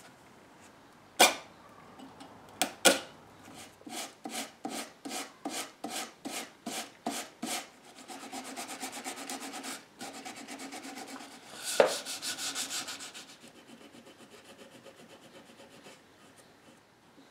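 Hand sanding a new veneer patch on a mahogany mirror frame, sandpaper on wood. After a few sharp clicks, it goes in even back-and-forth strokes at about three a second, then turns into faster, steadier rubbing that grows louder and then fades.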